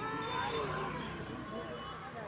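People's voices talking over a low, steady rumble.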